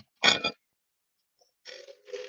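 A woman's short breathy vocal sound, then after about a second of quiet a lower, quieter throaty vocal sound with a steady pitch near the end.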